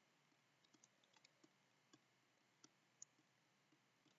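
Near silence with faint, scattered clicks of a stylus tapping on a writing tablet as letters are written stroke by stroke, the two clearest a little past halfway.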